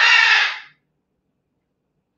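The end of a rooster's crow, a loud, harsh, drawn-out call that cuts off less than a second in.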